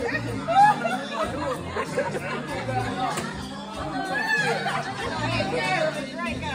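Voices chatting in a room over background music with a steady bass line.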